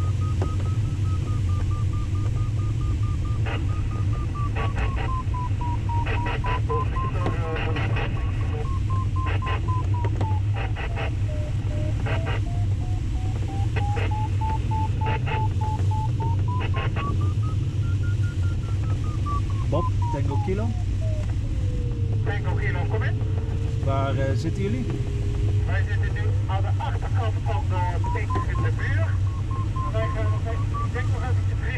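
A glider variometer's audio tone slides slowly up and down in pitch, its pitch following the sailplane's climb and sink. It peaks about two-thirds of the way through, then drops low for a few seconds. Underneath runs steady rushing airflow noise in the cockpit of a Schempp-Hirth Ventus 2cT sailplane.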